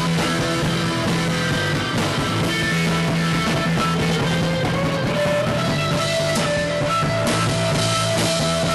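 Rock band playing an instrumental passage: electric guitar over a drum kit, with held notes throughout and no singing.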